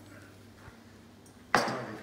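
Low room tone, then about one and a half seconds in a single sharp knock with a short ring: a stainless steel saucepan being set down.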